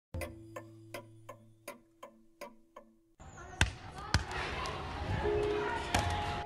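A basketball bounced about three times a second for three seconds, each bounce ringing briefly and the bounces growing fainter. The sound then cuts to open-air noise with two sharp thuds about half a second apart and faint voices.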